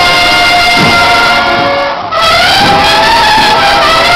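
Processional brass band music, trumpets holding long, loud notes; about two seconds in the sound dips briefly, then a note bends upward and wavers before settling back.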